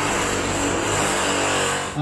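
A loud, steady racket of renovation work: a power tool running continuously, its hiss-like noise with a high whine on top.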